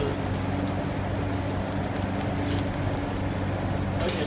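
Steady low mechanical hum with a constant rushing noise, and a few faint crackles from the open charcoal fire under a spit-roasted suckling pig.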